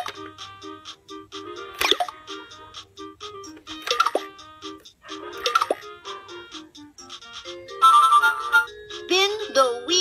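VTech Letter Sounds Learning Bus playing its electronic tune through its small speaker: a simple, bleepy melody of short notes, broken by a few sharp clicks. From about eight seconds in come louder pitched sound effects with sliding tones.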